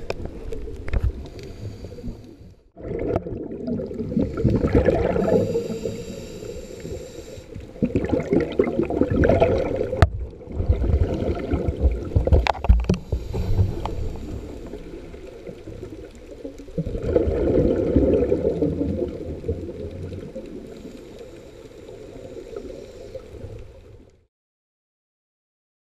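Muffled underwater water noise recorded by a submerged camera, a low rumbling gurgle that swells into louder rushes every few seconds, with a sharp click about ten seconds in.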